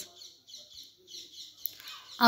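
A pause in a recorded voice-over: faint background hiss with a single short click about one and a half seconds in.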